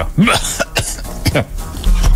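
A person's voice making short non-word sounds, such as coughing or throat clearing, over a low music bed.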